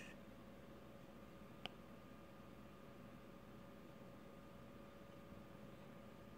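Near silence: room tone with a faint steady hum, and a single short click about a second and a half in.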